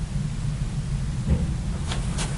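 Steady low hum of room noise, with a soft knock a little past the middle and a brief click near the end.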